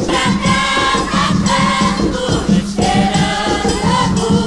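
Choir singing an Umbanda ponto (sacred song) to Oxum, held sung phrases over a steady rhythm of hand drums.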